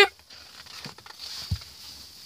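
Pages of a large glossy book being turned by hand: a paper rustle and swish, with a soft thump about one and a half seconds in.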